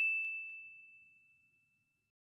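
A single high, bell-like ding sound effect ringing out on one clear tone and fading away about a second in.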